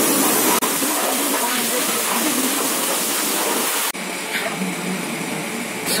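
A steady, loud hiss of wash-bay noise that drops abruptly to a quieter hiss about four seconds in.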